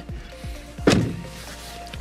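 The rear-hinged rear door of a Mazda MX-30 pulled shut from inside, closing with one solid thunk about a second in.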